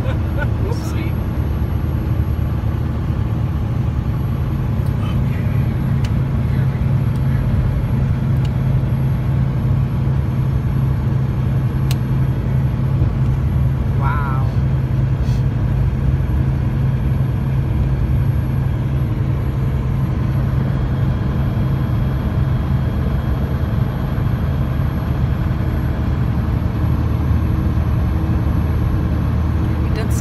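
Steady low drone of a semi truck's engine and road noise, heard from inside the cab while cruising at highway speed.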